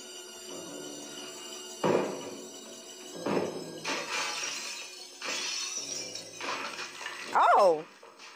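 Horror-film soundtrack: glass shattering and a door being broken through, with a crash about two seconds in, another a second and a half later, then longer stretches of breaking noise, over the film's score.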